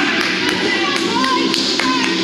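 Several sharp, irregular taps of a basketball bouncing on a hardwood court, with short sneaker squeaks, over background music.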